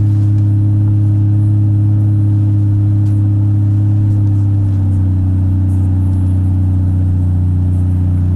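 Truck engine and road noise heard inside the cab while driving, a loud steady low drone that drops slightly in pitch a little past halfway through.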